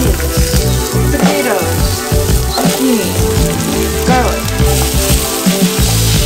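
Chopped onions frying in hot oil in a steel pot, with a steady sizzle, under background music with a beat.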